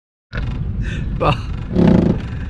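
Boat's outboard motor running steadily, with two men laughing over it. The sound cuts in a moment in.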